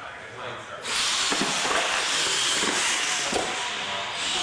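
Radio-controlled monster trucks launching down a concrete drag strip: a loud, steady whir and hiss of motors and tyres starts suddenly about a second in. A few short knocks come through it as they run over the course.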